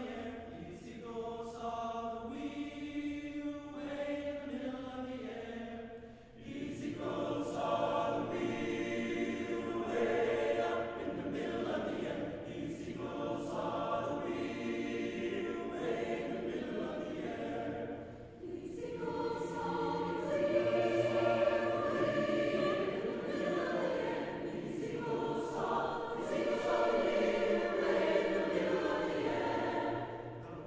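Large mixed choir of men's and women's voices singing sustained chords. The sound drops briefly between phrases about six and eighteen seconds in, and each time comes back fuller and louder.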